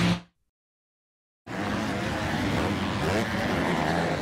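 Guitar music cuts off, then about a second of silence, then 250-class motocross bikes racing on the track, their engines revving up and down over a steady bed of track noise.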